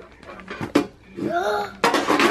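Handling noises from a picture book and a plastic shopping bag: a sharp click a little before the one-second mark and rustling, with a brief rising-and-falling voice sound about one and a half seconds in.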